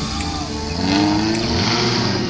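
Off-road 4x4's engine revving under load as it climbs through a muddy trench. Its pitch rises about half a second in, then holds and eases slightly near the end.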